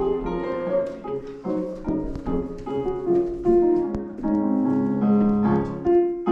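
Piano music with a slow, flowing melody over sustained chords.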